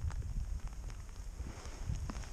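Low rumble of wind and movement on a body-worn GoPro's microphone, with a few faint clicks, as the wearer moves through heather.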